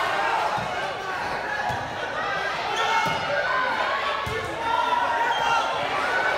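Chatter of a crowd of students in an echoing gym, with dull thuds of a volleyball about a second apart.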